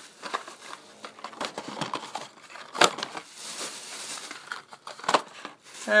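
Plastic shopping bag and clear plastic blister packs crinkling and rustling as toy cars are handled and stuffed into the bag. Irregular crackles and clicks run throughout, with a sharper crackle about three seconds in and another near the end.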